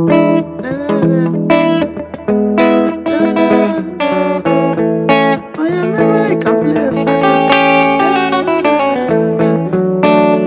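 Electric guitar played melodically, picking single-note lines and chord fills in A major, with bent and slid notes gliding up and down in pitch. A low steady bass tone sounds underneath from about half a second in.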